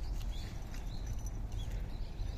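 Small birds calling in the trees: several short, arching chirps over a steady low rumble.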